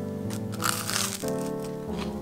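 A bite into crisp buttered toast: a short crunch, about a second in, lasting around half a second, over background music.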